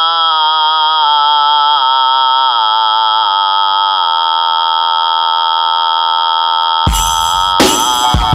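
Electronic synthesizer intro: a sustained buzzy synth note steps down in pitch about every three quarters of a second for the first four seconds, then holds, over a steady high tone. Near the end a hip-hop beat with drums comes in.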